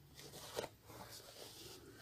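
Faint rustling of a fabric top and sewing thread being handled during hand sewing, with a light click about two-thirds of a second in.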